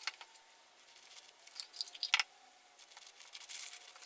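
Faint, scattered rustles and wet squishes of a newspaper strip being dipped in papier-mâché paste and drawn out of the jar, with a couple of sharper rustles about two seconds in.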